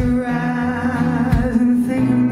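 A woman's voice holding one long sung note with a slight vibrato over a strummed acoustic guitar, in a live acoustic duet; the guitar strums land near the start and again about a second and a half in.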